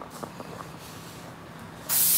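Low background with a few faint clicks as the phone is moved, then a loud steady hiss cuts in suddenly near the end.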